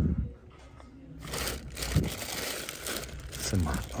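Clear plastic bags around toys crinkling as hands rummage through them, starting about a second in.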